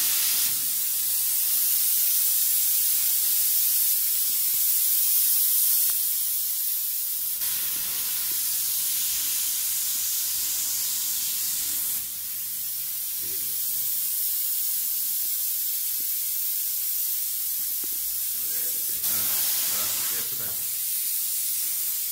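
Spray foam insulation gun hissing steadily as it sprays foam. The hiss is loud and high, and its strength shifts a few times as the trigger and the spray change, with a short drop about halfway through.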